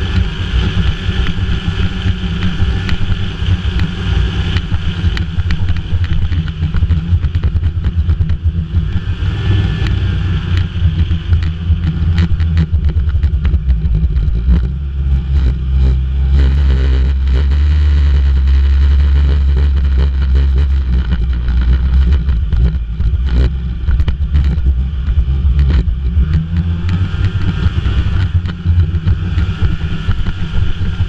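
Snowmobile engine running under way along a trail, heard from the rider's seat as a loud, continuous drone. The drone swells and steadies for several seconds around the middle.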